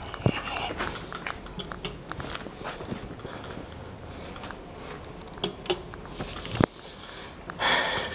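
Handheld camera handling noise: scattered rustles and clicks, with a sharp knock just after the start and another about six and a half seconds in, and a short burst of hiss near the end.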